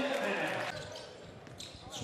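Basketball arena sound during a game: crowd murmur and on-court sounds, falling quieter a little under a second in, with a few faint sharp clicks near the end.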